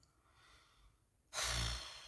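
A woman's sigh: a faint breath in, then a loud breathy exhale starting about a second and a half in and fading away.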